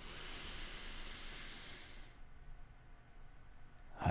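A man breathing in deeply and audibly, a hissing draw of air that lasts about two seconds before it fades out, the inhale of a paced breathing exercise.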